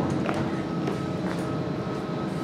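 1988 Dover Impulse hydraulic elevator running: a steady mechanical hum and rumble with a faint held whine.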